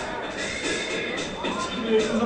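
High, wavering vocal whoops over quieter band sound in a live rock concert recording.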